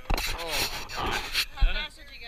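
Voices talking, overlaid for about a second and a half by a loud rubbing rasp of a hand handling the camera, ending in a short thump.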